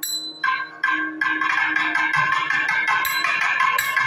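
Thavil drums playing a fast percussion solo (thani avarthanam): crisp, rapid strokes that start with a few short phrases and then run on unbroken.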